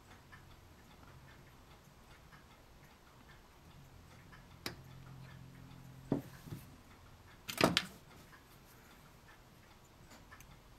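A few sharp plastic clicks and snips as side cutters nip a small part from a plastic model-kit sprue: single clicks a little before the middle, then the loudest quick cluster of clicks about three-quarters of the way through.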